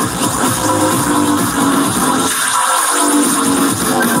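Loud electronic dance music from a festival sound system, recorded from the crowd, with a steady beat. The bass drops out briefly about two and a half seconds in.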